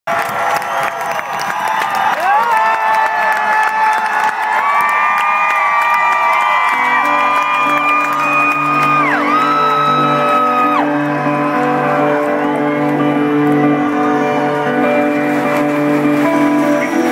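Rock concert crowd cheering, whooping and screaming, with long held high screams. About seven seconds in, the band's intro starts: a low sustained chord pulsing in a slow rhythm under the cheering.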